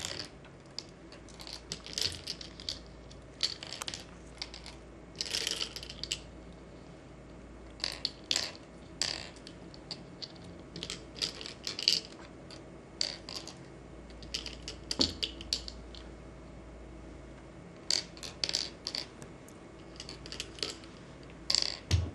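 Go stones clicking and clattering on a wooden board as they are picked up, slid and set down by hand in an irregular run of sharp clicks and quick little clusters: the stones being rearranged to count territory at the end of the game.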